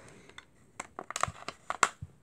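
A run of sharp hard-plastic clicks and knocks as a 1970s Star Wars action figure and its plastic carrying-case trays are handled. The clicks come thicker in the second half, and the loudest is near the end.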